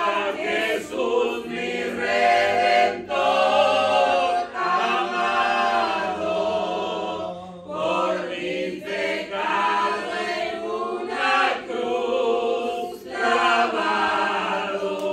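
A woman and a man singing a hymn together a cappella, in long held phrases with short breaks every second or two.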